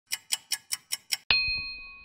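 Logo sound effect: a clock ticking six times in quick succession, about five ticks a second, then a single bell-like ding that rings on and fades.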